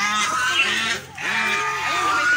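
Domestic white geese honking over and over, several calls in quick succession with short breaks between them.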